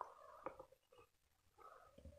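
Near silence: quiet room tone, with two faint ticks near the start of a pen tip touching paper as an equals sign is written.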